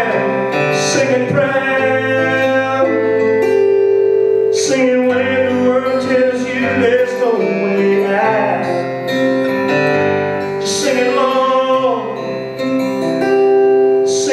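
A man singing in long, held notes over a strummed acoustic guitar.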